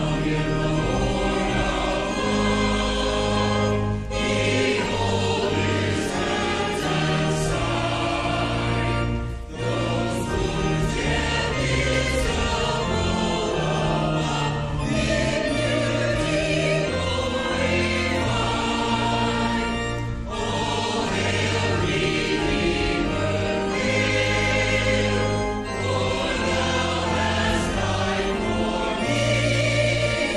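Church choir singing sacred music in parts over sustained low accompaniment, with short pauses between phrases.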